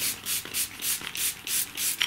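A fine-mist water spray bottle pumped in quick succession, about four short hissing spritzes a second, misting dry Brusho ink powder on card.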